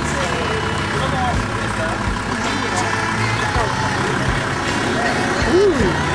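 People talking, with one louder voice near the end, over a steady low rumble.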